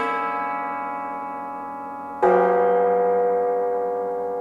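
Concert cimbalom: a chord struck right at the start and another about two seconds in, each left to ring and slowly die away.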